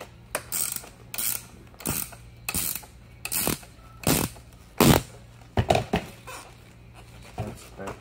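Ratcheting wrench clicking in short bursts, one swing after another, as it tightens the nuts on the saddle's seat-post clamp. The loudest burst comes about five seconds in.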